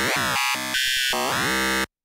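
Phase Plant synth lead: a sawtooth oscillator phase-modulated by a lower second oscillator, giving a gritty, buzzing tone. Its pitch swoops down and back up near the start and again late on, then it cuts off suddenly just before the end.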